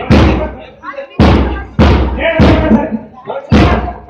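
A bass drum beating a steady march time, about one heavy strike every 0.6 seconds, each ringing out before the next, with a few beats struck lighter.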